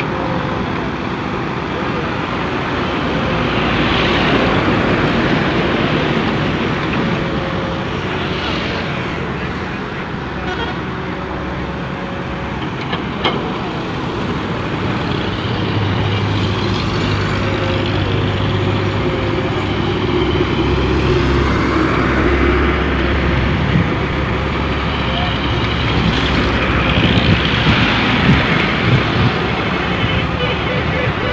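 Volvo EW130 wheeled excavator's diesel engine running under load as it digs and dumps bucketfuls of coal into a truck, its note steadying into a low drone partway through. Road traffic passes close by, with a few louder swells from passing vehicles.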